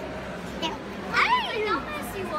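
A toddler boy's high-pitched wordless cry about a second in, its pitch falling away over half a second.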